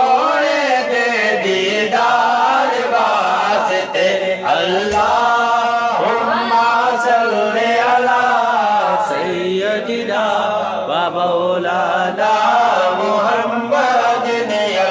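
A man reciting a naat in an unaccompanied melodic chant, holding long notes and gliding between them without a break.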